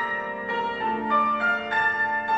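Grand piano playing a classical passage of single notes, a new note about every third of a second, each left ringing over the ones before it in a bell-like wash.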